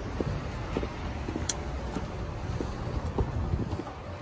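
Street ambience: a steady low rumble of road traffic, with light footsteps and small knocks scattered throughout.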